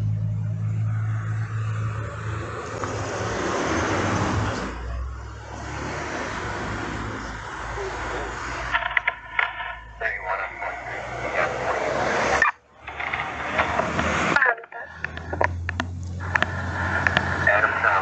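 Roadside traffic heard through a police body camera: a steady engine hum, then a passing vehicle that swells and fades over the first half. Clicks, clothing rustle and muffled voices follow in the second half.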